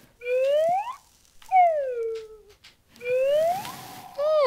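Comedic slide-whistle-style sound effect: three smooth glides in pitch, rising, then falling, then rising again, each about a second long with short gaps between.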